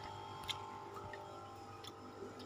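Faint steady hum of a running aquarium air pump, with a few light ticks.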